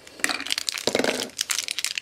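A crinkly plastic blind-bag wrapper for a Shopkins mini toy crackling as it is squeezed and handled in the fingers, giving many small irregular crackles.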